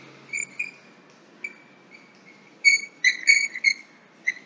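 A small bird chirping: short, high notes, a few scattered at first and then a quick cluster of chirps in the second half.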